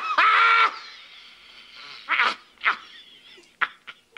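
A man's hysterical laughter: a long, held, high laughing cry that breaks off and echoes away under a second in. After a pause come two short, breathy gasping bursts, and a fainter one near the end.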